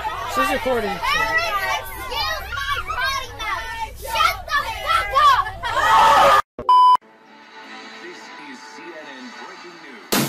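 A high-pitched voice shrieking and yelling loudly, its pitch swinging up and down, for about six seconds, then a short electronic bleep and a quieter stretch of faint voices.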